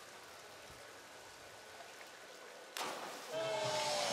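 Platform diver's entry into the pool: a sudden splash of water noise about three-quarters of the way in, after faint steady background hiss. A held tone follows, sliding slowly down in pitch.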